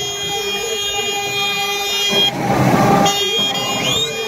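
A confetti cannon firing a little past halfway: a short, loud hiss lasting under a second as paper confetti is blown into the air. Under it runs a steady held tone with many overtones.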